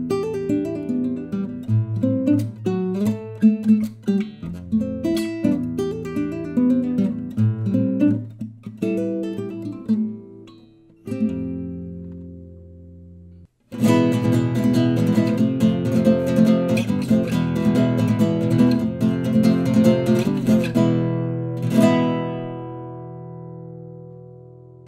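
aNueNue MN14 crossover nylon-string travel guitar with a solid red-cedar top, played alone: a fingerpicked passage of single notes, a chord left ringing, then after a brief break about 13 seconds in, steady strumming that ends on a chord ringing out.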